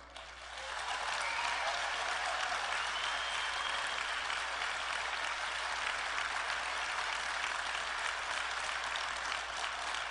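Large audience applauding, swelling up within the first second and then holding steady and even.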